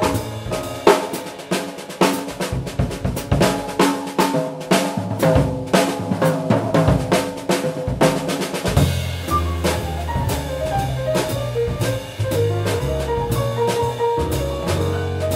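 Jazz piano trio playing, with the drum kit to the fore: dense snare, rimshot and bass-drum strokes under piano notes. The double bass's low line comes in strongly about nine seconds in.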